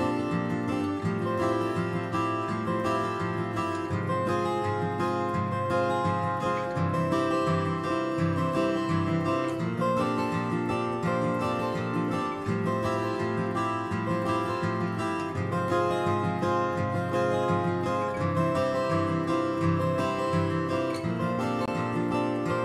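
Acoustic guitar music with plucked and strummed notes, played back as a recording.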